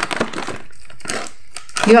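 Crinkling of a fruit jelly candy packet as a hand rummages inside it, a rapid, irregular run of small crackles.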